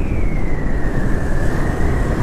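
Motorcycle riding along at speed, with wind buffeting the microphone and a thin high whine that slides slowly down in pitch over the first second and a half.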